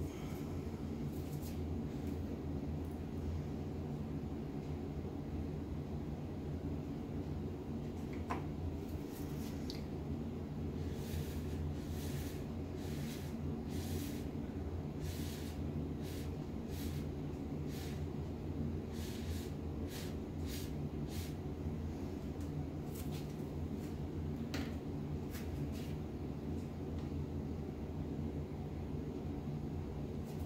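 Many short puffs of breath blown through a paper drinking straw onto wet acrylic paint, each a brief hiss, coming in quick runs through the middle of the stretch, over a steady low room hum.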